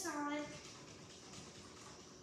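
A person's brief wordless vocal sound, falling in pitch, in the first half-second, followed by quiet room sound.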